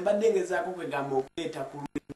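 A man speaking in short, quick phrases.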